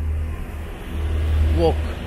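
Low, steady rumble of road traffic, swelling about a second in as a car goes by.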